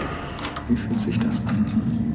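Keys jangling with a few light metallic clicks over a low steady drone, the sound of a cell door being locked.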